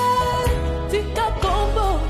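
A woman singing a gospel song over a band with bass and drums: a held note, then a wavering melodic line, with a drum hit about every half second.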